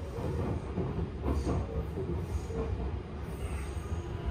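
Tobu 10080/10050-series electric commuter train running, heard from inside a passenger car: a steady low rumble of wheels on rails, with a short clatter about a second in.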